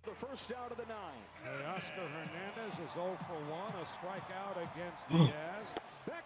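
Faint baseball TV broadcast audio: a man's commentary voice talking steadily, with a few short sharp clicks and a brief louder moment about five seconds in.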